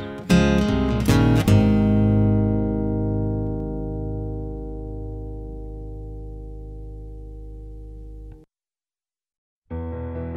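Acoustic guitar music ending: a few strummed chords, then a final chord held and slowly dying away until it cuts off sharply. After a second or so of silence, the next track begins, with piano, near the end.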